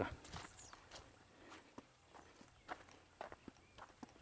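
Faint, irregular footsteps crunching on dry grass and stubble as someone walks.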